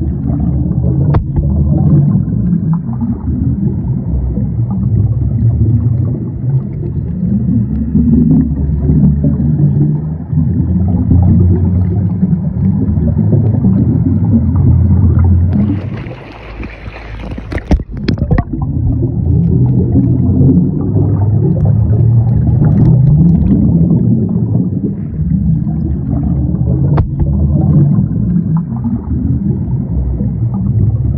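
Muffled underwater rumbling and gurgling of water around the camera, mixed with the bubbling of divers' exhaled scuba regulator air. About 16 s in, the camera breaks the surface for a couple of seconds and the sound turns to a brighter open-air splash and hiss, with a few sharp knocks, before going back under.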